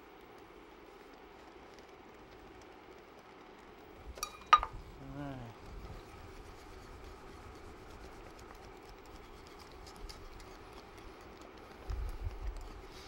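Wire whisk stirring milk into a roux in a metal pan, with faint light ticks against the pan over a steady low hum. A sharp metallic clank comes about four and a half seconds in.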